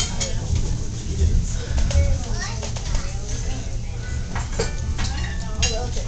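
Low steady rumble of a passenger train car in motion, heard from inside the car, under a murmur of voices and a few light clicks.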